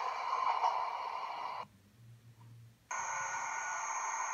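Steady noise of trains in an underground station, with several steady tones running through it. Partway through it cuts out abruptly for about a second, leaving only a faint low hum, then comes back suddenly with a high steady whine added.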